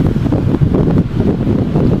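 Wind buffeting the microphone: a loud, steady low rumble with no other clear sound.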